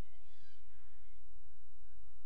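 Steady low rumble of open-air field ambience, with faint distant calls from players on the field.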